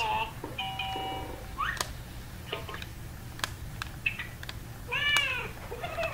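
LeapFrog electronic learning toy playing short steady electronic tones and a quick rising sound effect, with sharp clicks of its buttons being pressed. Near the end it plays a short rising-and-falling call.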